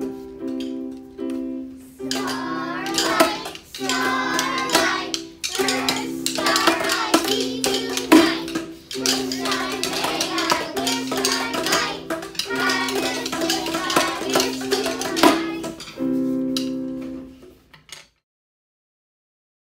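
Recorded music: a keyboard playing sustained chords in an even, repeating pattern, with children's voices over it from about two seconds in until about sixteen seconds. The music fades out near the end.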